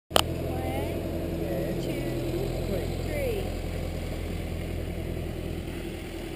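A vehicle engine idling steadily, a low even hum, with faint voices talking around it. A sharp click comes at the very start.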